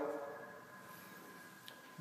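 Faint room tone with a quiet steady hum and one small click near the end.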